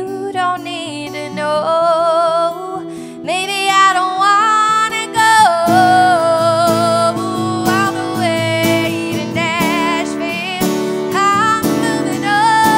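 A woman singing long held notes with vibrato over a strummed acoustic guitar; the strumming grows fuller and more insistent about halfway through.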